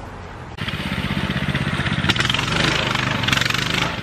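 A mini bike's small engine idling, then, about half a second in, opening up loudly and running hard as the bike pulls away across the grass.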